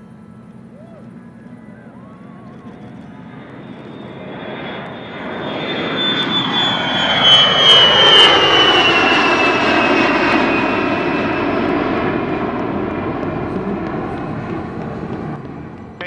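WhiteKnightTwo carrier aircraft's four turbofan jet engines at full power as it takes off and climbs past overhead. The sound builds to a peak about eight seconds in, with a whine that falls steadily in pitch as the aircraft goes by, then fades away.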